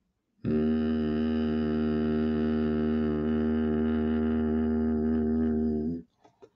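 A man humming one steady, low 'om' through his nose with his mouth closed, about five and a half seconds long, starting half a second in. It is the humming out-breath of a nasal-decongestion breathing exercise, tongue on the palate so the vibration carries into the sinuses.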